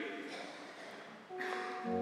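A spoken voice dies away into the reverberation of a large church. About a second and a half in, sustained organ chords enter, and low bass notes join just before the end, opening the introduction to a hymn for the congregation.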